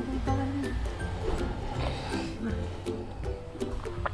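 Background music of short, separate pitched notes.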